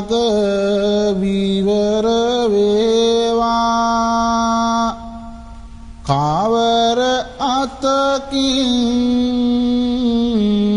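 A Buddhist monk's solo voice chanting Sinhala verse (kavi) in a slow, melismatic melody with long held notes. About five seconds in it breaks for a breath, then comes back in on a rising note.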